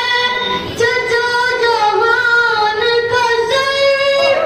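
A boy reciting paish-khwani, devotional verse sung unaccompanied into a microphone, in a high voice held on long, wavering notes.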